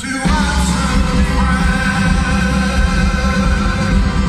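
Live chamber-pop band playing, recorded from the audience, with a male lead vocal over accordion, guitars and keyboards. The low end briefly dips right at the start.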